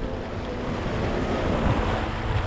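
Sea waves washing against rocks, with wind buffeting the microphone.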